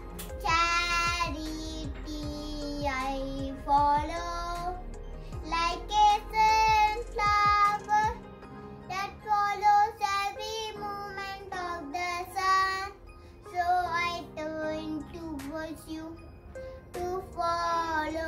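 A young boy singing a prayer song, his voice moving through long held notes with short breaks between phrases.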